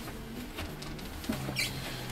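Faint scuffling and pattering of a dog moving about on the workshop floor, claws and paws scrabbling in short irregular bits.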